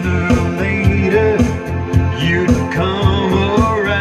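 A man singing into a microphone over recorded backing music with a steady beat.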